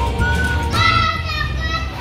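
Background music playing with a child's high-pitched voice calling out for about a second, starting a little before the middle.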